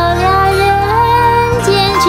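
A high female voice sings a slow Mandarin pop ballad over a steady backing track, drawing out long notes that slide up and down in pitch.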